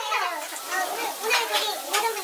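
Lively chatter of a group of people all talking over one another, with no single voice clear.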